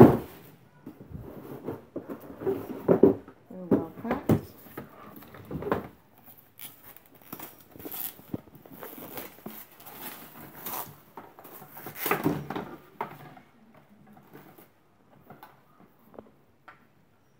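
Clear plastic wrap rustling and crinkling in irregular bursts as it is pulled off a new cordless stick vacuum, with light knocks of its plastic parts being handled; the bursts thin out near the end.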